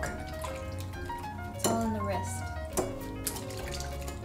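Wire whisk stirring a thin milk-and-cream mixture in a glass bowl, with light sloshing and clicks of the wire against the glass, under soft background music.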